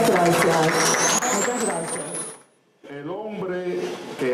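Voices over a microphone: a woman's singing, with a thin rising whistle, stops abruptly about two and a half seconds in, and after a short silence a man's voice begins.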